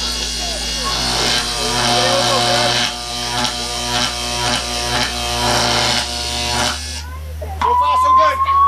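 Electric buzzing sound effect for a stage teleporter machine: a steady buzz with many overtones that cuts off about seven seconds in. Near the end a steadily rising whine begins.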